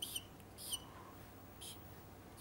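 Felt-tip marker squeaking faintly on a whiteboard as lines are drawn, in three short strokes about two-thirds of a second apart.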